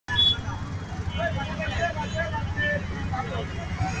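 Busy street traffic: a steady low rumble of engines and passing vehicles, with scattered voices mixed in.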